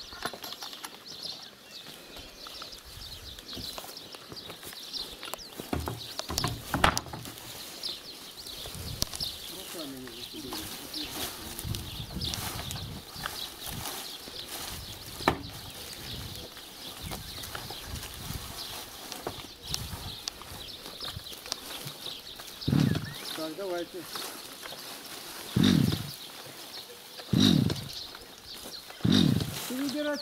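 Outdoor yard sounds: small birds chirping high and often throughout, with four short loud cries in the last eight seconds.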